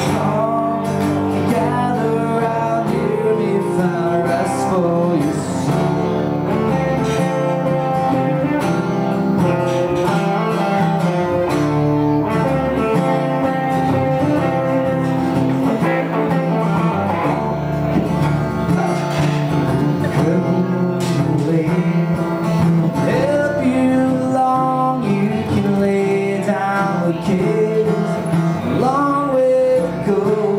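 Two guitars, a semi-hollow electric and an acoustic, playing a song together live.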